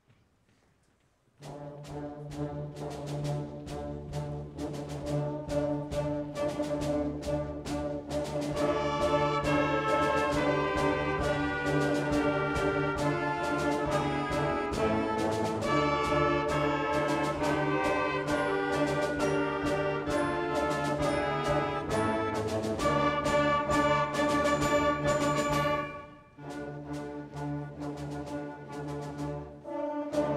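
Middle school symphonic band (wind band) playing. The music starts suddenly about a second and a half in, swells louder about eight seconds in, and drops back briefly near the end before going on.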